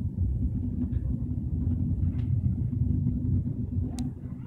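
Passenger train running at speed, a steady low rumble heard from inside the carriage.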